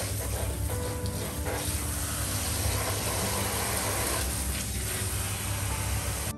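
Handheld shampoo sprayer running water onto hair and into a salon wash basin: a steady hiss and splash.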